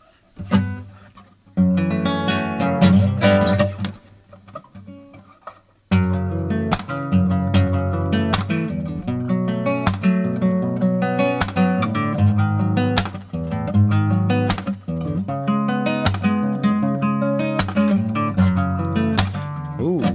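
Takamine C132S classical guitar played solo: a short chord phrase that rings out and fades, then, about six seconds in, a steady rhythmic accompaniment with sharp, regularly spaced strums.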